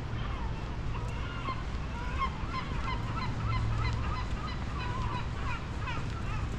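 A flock of birds calling, many short overlapping calls that thicken from about a second in, over a low steady rumble.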